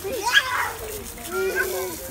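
Children squealing while being sprayed with a garden hose in a kiddie pool, with the hiss and splash of the hose water. There is a short high squeal about a third of a second in, then a longer wavering cry in the second half.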